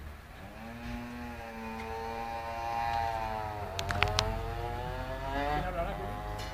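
A motor vehicle's engine running as it passes, its pitch holding and then dropping about halfway through as it goes by. A few sharp clicks come just after the drop.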